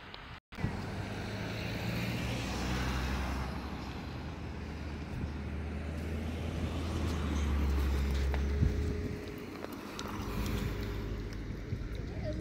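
Cars driving by on a paved road: a steady low engine hum with tyre noise that swells and fades twice.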